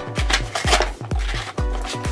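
Background music with a steady, regular beat, over the scraping and rustling of a cardboard blind box being pried open by hand.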